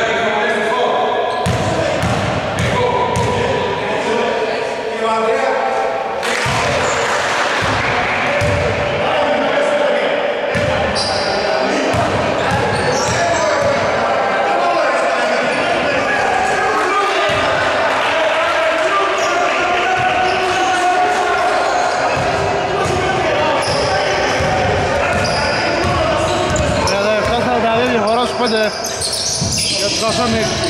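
Basketball bouncing on a wooden gym floor during play, with players' voices, echoing in a large sports hall.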